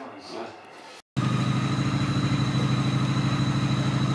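Faint talk for about a second, then after a sudden cut a steady machine hum starts, with a thin high whine over it, and holds level.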